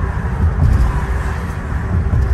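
Steady low rumble of road and engine noise inside a car's cabin moving at highway speed.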